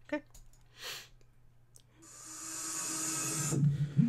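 Sound effect of a digital card-pack opening animation: a hissing swell that starts about halfway through, grows louder for about a second and a half with a faint steady low hum under it, then cuts off suddenly.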